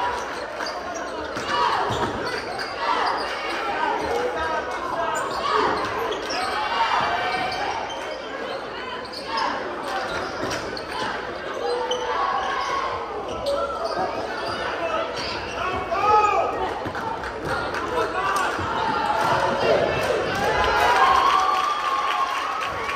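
Basketball game in a large gym: the ball bouncing on the hardwood court in scattered knocks, under continuous chatter and calls from the crowd in the stands.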